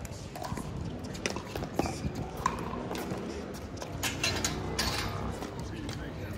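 Sharp pops of pickleball paddles hitting the plastic ball at irregular intervals, amid indistinct voices.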